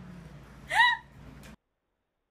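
A cat gives a single short meow about three-quarters of a second in, rising and then falling in pitch. The sound cuts off abruptly about a second and a half in.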